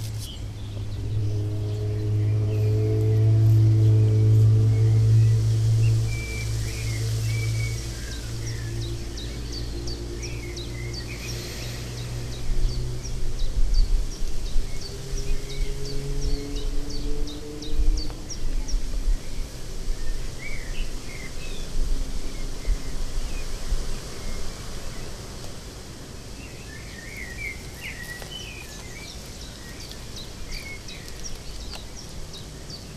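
Outdoor ambience with small birds chirping and singing throughout. A low droning hum with overtones swells over the first few seconds and fades out by about eight seconds in, and there are low bumps near the middle.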